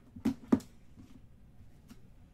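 Two sharp plastic clacks about a third of a second apart, the second louder, from hands handling a plastic card holder, then a faint click near the end.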